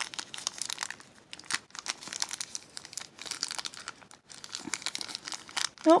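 Thin plastic wrapper of a mini toy blind bag crinkling in the hands as it is worked open, a loose run of irregular crackles.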